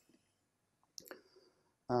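A single short click about a second into a pause in a man's lecture speech, with his 'um' starting at the very end.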